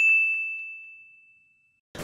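A single bright bell ding sound effect, struck once and fading away over about a second and a half: a sting for a segment title card.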